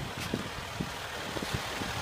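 Faint steady low engine rumble with a few soft ticks.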